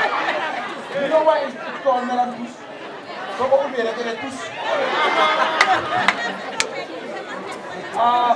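Speech and chatter: a man talking over a microphone amid crowd chatter, with a few sharp clicks about five and a half to six and a half seconds in.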